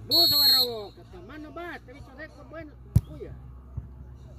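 A short, loud referee's whistle blast over a shout at the start, then scattered voices of onlookers. About three seconds in comes a single sharp thud as the beach soccer ball is kicked.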